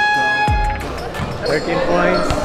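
Background music with a held high note and a deep falling bass hit, which cuts out under a second in. Then come the live sounds of a large gym hall: voices and the knocks of basketballs bouncing on the court.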